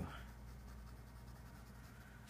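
Faint sound of a pen moving on paper, over a low steady hum.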